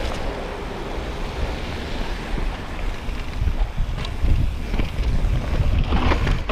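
Wind buffeting the microphone of a chest-mounted camera on a mountain bike descending a dirt trail, with a low rumble from tyres and trail. The rumble grows stronger after about three and a half seconds, and there are a few sharp knocks from the bike about four seconds in and near the end.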